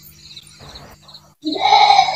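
A faint steady low hum, then about one and a half seconds in a short, loud, drawn-out voice-like call lasting about half a second.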